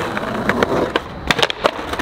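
Skateboard wheels rolling on smooth concrete, then the board is popped for a kickflip attempt and comes down with several sharp clacks in quick succession about a second and a half in, the rider's feet off the board.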